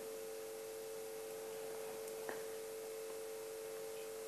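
Faint steady electronic tone at one fixed pitch, with one soft click a little past halfway.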